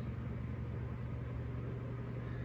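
Steady low hum with a faint hiss, unchanging throughout: the background drone of running room equipment such as a fan or lights.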